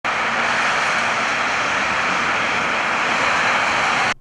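Steady roar of traffic on a multi-lane motorway, cars and trucks running past.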